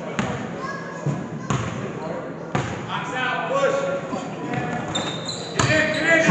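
Basketball bouncing on a hardwood gym floor, three slow bounces about a second apart, as a player dribbles at the free-throw line before the shot. Steady crowd chatter fills the gym throughout.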